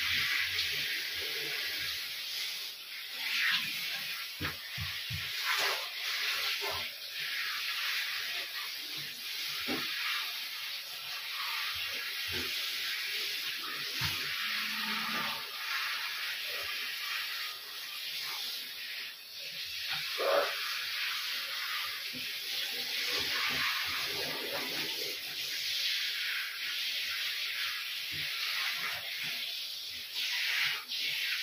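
Water spraying steadily from a handheld shower into a bathtub as hair is rinsed under it, with scattered small knocks.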